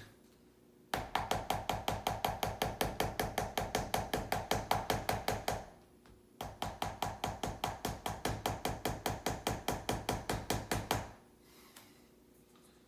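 Plastic oral syringe rapped rapidly against a wooden tabletop, about six sharp taps a second in two runs of four to five seconds with a short break between, to knock air bubbles out of the drawn-up oral suspension.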